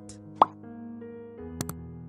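Soft background music of sustained chords. A short rising pop comes about half a second in, and a quick double click comes about a second and a half in: the sound effects of an on-screen subscribe-button animation.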